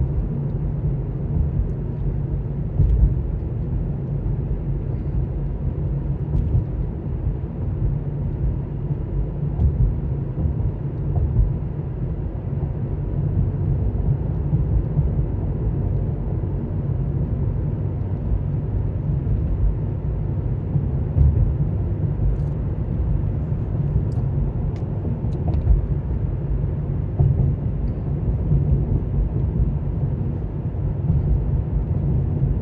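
Car driving at steady speed, heard from inside the cabin: a continuous low rumble of road and engine noise, with a few faint clicks.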